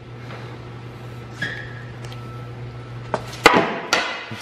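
Wooden balance board (a deck riding on a roller) knocking down on its roller and the concrete floor as it is popped for a shove-it trick: three sharp knocks near the end, the middle one loudest.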